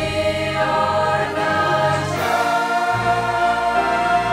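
Mixed choir of men, women and children singing a worship song with instrumental backing, holding long chords over deep bass notes that change about three seconds in.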